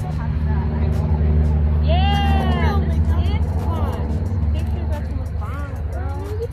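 A woman's drawn-out exclamation, rising then falling, about two seconds in, with a few short vocal sounds after it, over a steady low mechanical hum.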